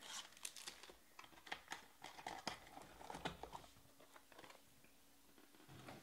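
Faint crinkling and light clicks of foil-wrapped trading-card packs and cardboard boxes being handled, thinning out about halfway through.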